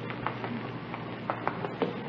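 Steady hiss of a running shower, a radio sound effect, with faint scattered clicks from the old recording.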